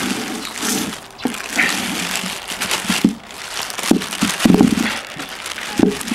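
Thin plastic bag crinkling and rustling as it is handled and opened to tip out taro seed corms, with a few sharp knocks among the rustling.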